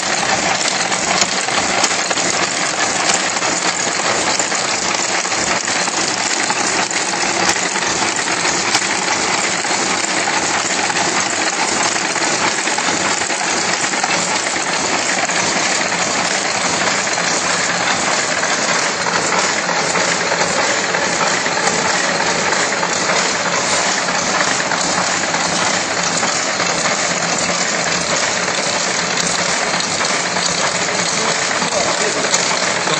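Match-making machine running at full speed: a loud, steady, fast mechanical clatter of moving metal parts with no pauses.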